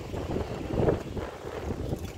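Wind buffeting a phone's microphone while riding a bicycle: an uneven low rumble that swells briefly about a second in.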